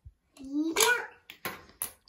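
A child's brief rising exclamation, then three quick sharp plastic clicks: a small ball being flicked from a spring launcher of a mini basketball shooting toy and knocking against the plastic hoop and floor.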